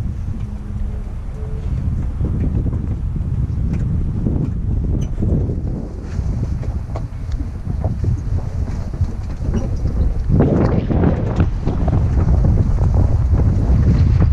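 Vehicle driving on a rough dirt track: a steady low rumble of engine and tyres with wind buffeting the microphone and small rattles. It gets louder and rougher about ten seconds in.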